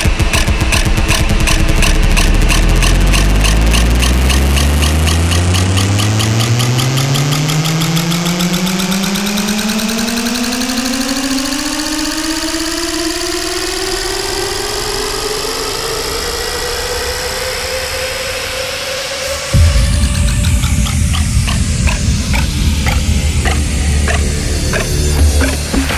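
Trance track in a build-up: a synth note rises slowly in pitch over fast, evenly repeated pulses, then the beat drops back in with heavy bass near the end.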